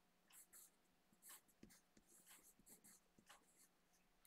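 Faint pencil scratching on paper as a word is written out in a series of short strokes.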